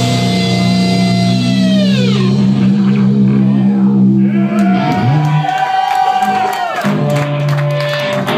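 Death metal band playing live with loud distorted electric guitars and drums. Held guitar notes slide down in pitch about two seconds in and again near seven seconds.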